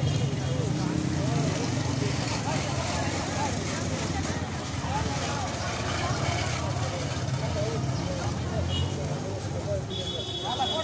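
Hubbub of a crowded street produce market: many voices talking over each other, none distinct, over a steady low rumble.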